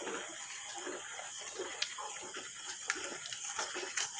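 A spoon stirring thick, wet pickle paste in a steel pan: irregular soft squelching with a few light clicks of the spoon against the metal, over a steady high-pitched background hum.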